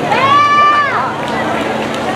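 A spectator's high-pitched voice lets out one held call, like a cheer, about a second long. It rises at the start and falls away at the end, over background chatter.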